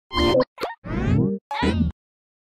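Animated title-sequence sting made of four quick cartoon sound effects: pops and a sliding tone, set as a short bit of music. It cuts off abruptly just before two seconds.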